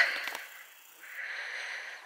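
A person's breath close to the microphone: a soft hiss lasting under a second, about a second in.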